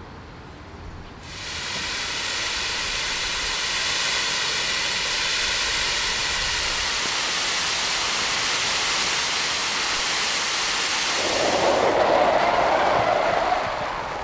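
Loud, steady hiss of water spraying from an unmanned fire hose lying on the ground, starting abruptly about a second in. Near the end a lower, louder rushing joins it.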